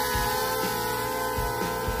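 DJI Mavic Air quadcopter hovering close by, loaded with a GoPro hanging beneath it; its propellers give a steady buzzing whine of several tones at once.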